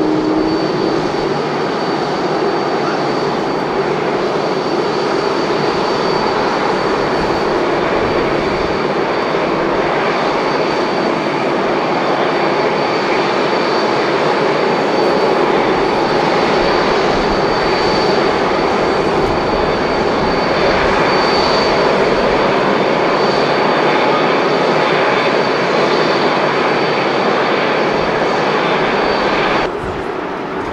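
Business jet's turbofan engines running on the runway: a steady rush with a thin high whine held throughout, cut off abruptly just before the end.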